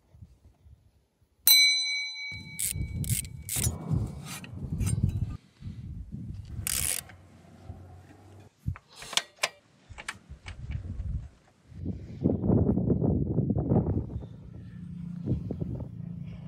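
Hand tools on a motorcycle's rear brake caliper during a brake-pad change: one ringing metallic clang about a second and a half in, then scattered clicks, clinks and knocks of metal parts being handled.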